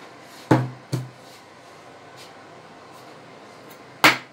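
Two sharp knocks in quick succession, about half a second apart, as things are handled on a kitchen counter, the first the louder; then a steady low room hum.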